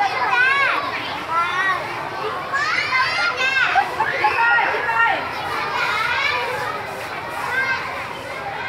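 A crowd of young children chattering and calling out at once, their high voices overlapping, with a few loud sing-song calls in the first second and again about three seconds in.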